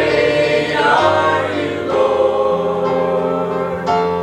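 A small mixed choir of men and women singing a worship song in harmony, holding long notes.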